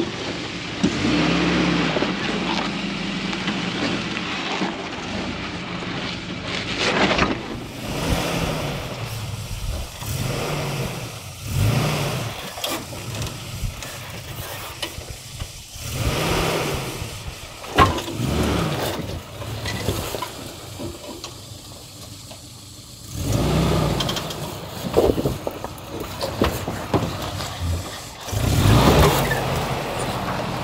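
Suzuki Samurai engine revving in short bursts, each rising and falling again every couple of seconds, as the small 4x4 crawls over boulders.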